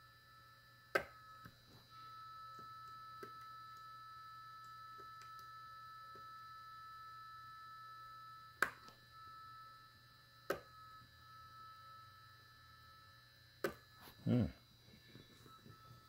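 Malectrics Arduino spot welder firing pulses through its handheld probe pens to weld strip onto lithium-ion battery cells. There are four sharp snaps: one about a second in, two close together past the middle, and one near the end. A faint steady hum from the welder's cooling fan runs underneath.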